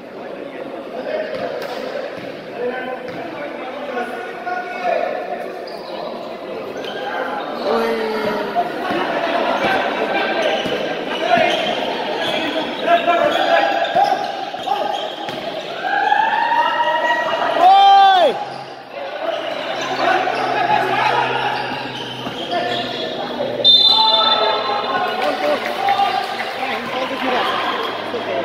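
A basketball being dribbled and played on an indoor hardwood-style court, with players and onlookers shouting and calling out, in a large metal-walled gym hall.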